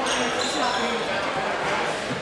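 Basketball being dribbled on a hardwood gym floor, with short high sneaker squeaks and crowd chatter echoing in the hall.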